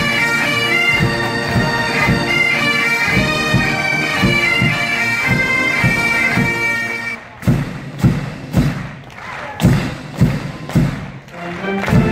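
Massed Highland bagpipes playing a tune over a steady drum beat. About seven seconds in, the pipes cut off together and the drums carry on alone, striking about twice a second.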